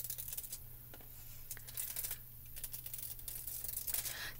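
Heat-transfer craft foil being peeled off cardstock: faint crinkling with small scattered crackles.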